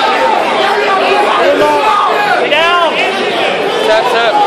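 Spectators shouting and talking over one another in a large hall, with one loud, high shout about two and a half seconds in.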